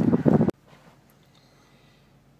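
Wind buffeting the microphone, cut off abruptly about half a second in, followed by near silence.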